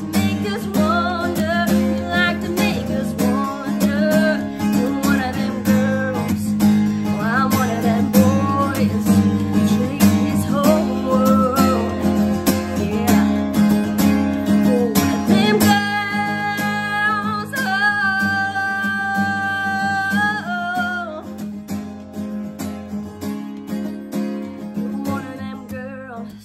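Acoustic guitar strummed steadily under a woman's singing voice. About sixteen seconds in she holds a few long notes, and the playing grows quieter toward the end.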